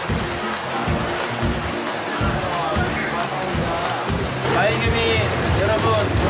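Water churning and bubbling from jacuzzi-style pool jets, with background music over it; a voice comes in about four and a half seconds in.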